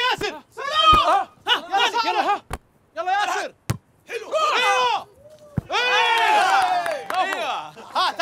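Hands striking a volleyball: several sharp slaps a second or more apart, amid men's shouts and yells.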